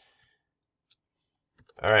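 A few faint, sparse computer keyboard keystrokes as code is typed, then a short spoken "All right" at the end.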